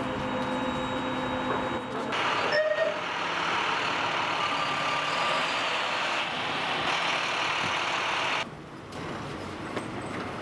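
Vehicle engine and traffic noise. It changes abruptly about two seconds in, with a brief high squeal soon after, and drops to a quieter background near the end.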